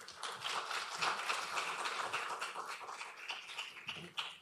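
Audience applauding, the clapping slowly tapering off towards the end.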